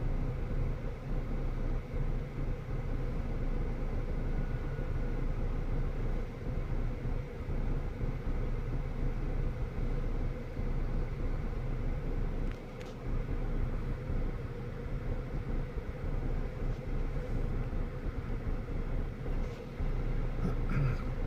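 A car idling, heard from inside its cabin as a steady low rumble, with one brief click a little past halfway.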